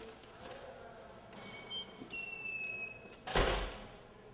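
Heavy metal door with a push bar squealing on its hinges for about two seconds in a steady high-pitched tone, then shutting with a single loud thud near the end.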